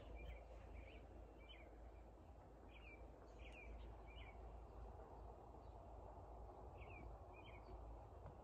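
Faint outdoor ambience: a small bird chirping, short high chirps about every half second through the first half, then a pause and two more near the end, over a low steady rumble.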